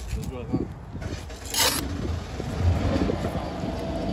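Phone microphone rubbing and brushing against a hi-vis vest, with a sharp scuff about one and a half seconds in. A low, steady engine hum comes in near the end.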